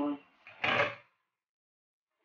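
A glass pot lid set down on a gas stovetop, one short scraping clatter of about half a second.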